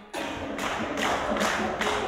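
A group of people clapping hands together in a steady rhythm, about two to three claps a second, over music. The clapping starts suddenly just after the beginning.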